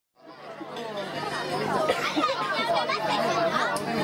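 Several people talking over one another, a babble of conversation that fades in from silence over the first second.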